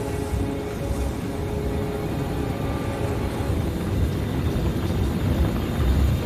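A low, fluttering engine drone that grows slightly louder, like a craft approaching. Held music tones fade out under it early on.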